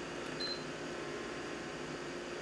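Quiet, steady room noise with a faint, short, high-pitched beep about half a second in.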